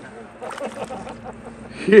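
Faint talk among the anglers over a steady low hum, with a man's loud 'yeah' just at the end.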